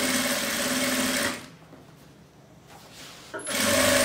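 Sewing machine stitching a seam that joins two denim jeans hems. It runs for about a second, stops for about two seconds, then starts up again near the end.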